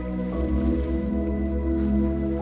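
Soft ambient new-age music of held, sustained chords; the chord changes about a third of a second in.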